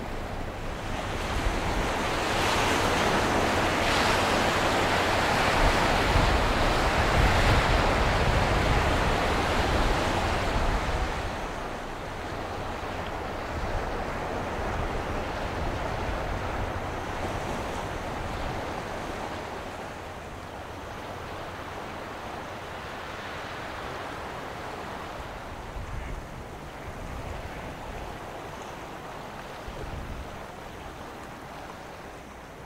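Waves washing against the river shore, a steady rush that swells over the first ten seconds or so and then eases, with wind rumbling on the microphone.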